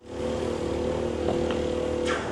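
Small gas engine of a wakeboard winch running at a steady pitch as it tows a rider, over a hiss of water spray.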